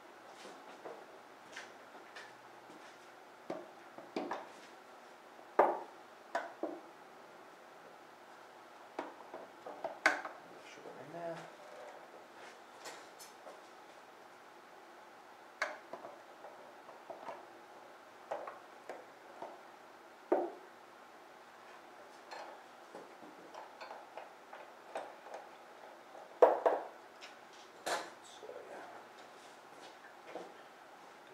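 Irregular clicks, taps and knocks of a Harley-Davidson V-Rod's air box cover being handled and pressed down onto its grommets, with a few louder knocks about 5 s in, 10 s in and near the end.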